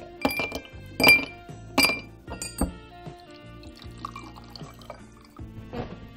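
A glass whisky tumbler clinking: four sharp, ringing clinks in the first three seconds, then liquid poured quietly, over background music.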